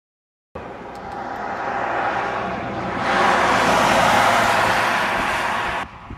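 Road traffic: a vehicle passing on the highway, its tyre and engine noise swelling to a peak a few seconds in and then cutting off suddenly.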